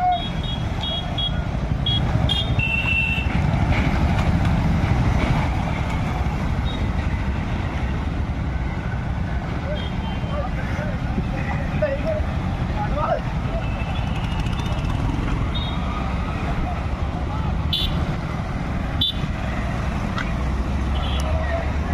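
Motorcycles riding past in a rally, their engines a steady low rumble, with short horn beeps in the first couple of seconds and again near the end.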